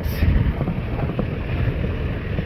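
Wind buffeting the microphone: a steady low rumble over outdoor street noise.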